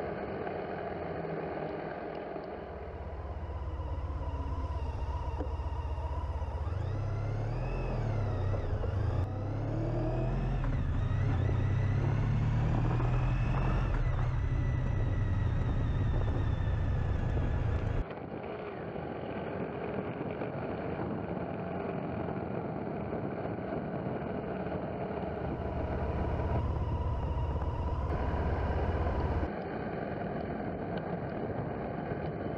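Motorcycle engine running under way with wind noise on the microphone, its note rising and falling with the throttle, loudest in the middle. The sound changes abruptly several times where separate clips are joined.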